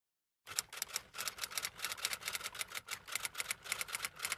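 Typewriter keys clattering in a quick, even run of keystrokes, several a second, starting about half a second in.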